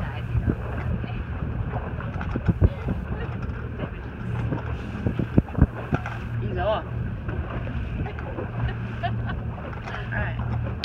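Boat motor running steadily under wind buffeting the microphone and water washing past the hull, with a few sharp thumps around the middle.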